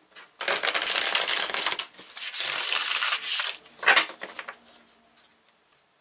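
A deck of oracle cards being riffle-shuffled twice, each riffle a dense rapid patter of card edges lasting about a second and a half. A single sharp tap of the cards follows near four seconds in.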